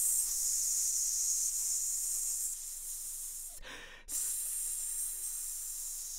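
A man hissing a long, sustained "sss" into a studio condenser microphone to test its sibilance, held so long that it leaves him light-headed. The hiss breaks off briefly about two-thirds of the way in, then starts again.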